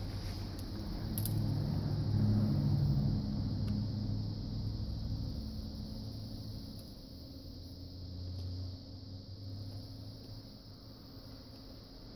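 Low rumble with a steady hum, swelling about two to three seconds in and then slowly fading away. A couple of faint clicks come near the start.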